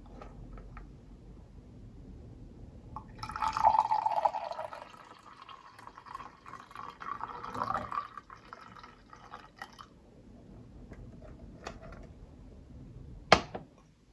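Coffee poured from a glass carafe into a glass mug of milk, a splashing stream for about five seconds that is loudest at first. Near the end, one sharp knock as the glass carafe is set down on the table.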